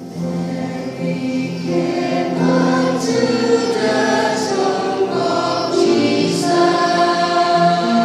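Mixed church choir of men's and women's voices singing a hymn with instrumental accompaniment; the accompaniment's held notes lead in and the voices come in about two seconds in.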